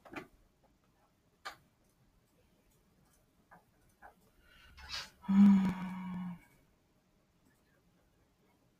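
A few faint, scattered clicks of a computer mouse, then, about five seconds in, a person's voice holds a single steady hum-like 'mmm' for about a second.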